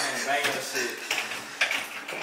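Light clicks and scrapes of a plastic card being worked into a door jamb to slip the latch, with a few sharp ticks in the second half, over faint talk.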